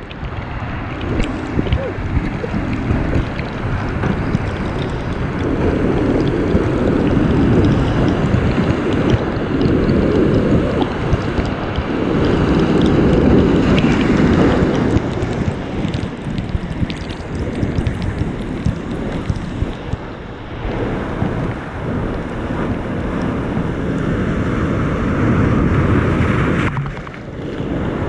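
Ocean surf breaking against shoreline rocks and washing across a concrete walkway, with spray and wind buffeting the microphone. The water comes in repeated loud surges, strongest in the first half, easing briefly near the end.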